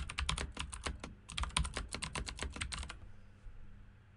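Typing on a computer keyboard: a quick run of keystrokes with a brief pause about a second in, stopping about three seconds in.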